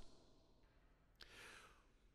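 Near silence: room tone, with a faint click and a soft breath at the microphone a little over a second in.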